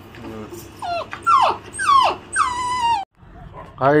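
Puppy whining: about four high, falling whines in quick succession, the last one longer, cut off suddenly about three seconds in.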